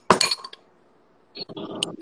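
Metal spoon clinking and scraping against a mixing bowl while mixing egg into sugar for cookie dough. A sharp clink comes right at the start, then a short lull, then more scraping with a small high clink near the end.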